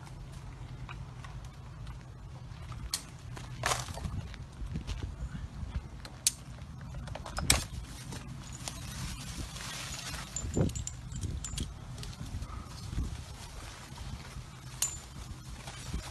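Scattered sharp clinks and knocks, about half a dozen spread irregularly, as a tree surgeon handles his climbing harness and gear and starts up the trunk, with a low steady hum underneath.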